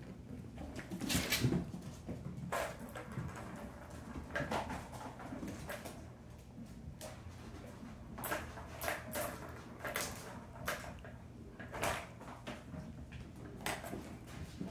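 Kittens playing on hardwood floor and rugs: irregular light knocks, scrabbles and patters of paws and batted toys. The loudest is a thump about a second in.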